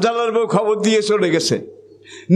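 A man's voice preaching in Bengali through microphones in a drawn-out, sing-song delivery, stopping about one and a half seconds in. A steady low hum runs underneath.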